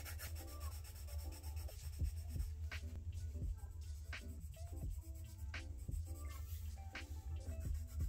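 Coloured pencil rubbing and scratching on sketchbook paper in a run of short shading strokes, with quiet background music underneath.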